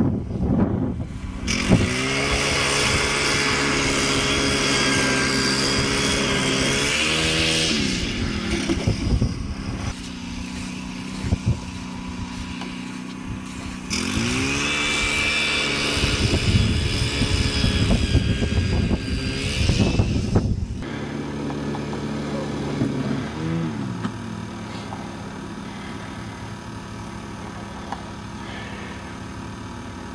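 StrikeMaster gas-powered ice auger, a small two-stroke engine, drilling through lake ice. It runs at full throttle in two stretches, each a few seconds long, and drops back to a lower idle after each one. The first drop comes about seven seconds in and the second about twenty seconds in.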